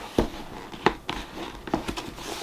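Cardboard mystery box being handled as it is opened: several sharp clicks and knocks with faint rustling in between.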